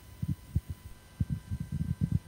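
Handling noise from a handheld microphone being moved in the hand: a series of soft, irregular low thumps over a faint steady hum.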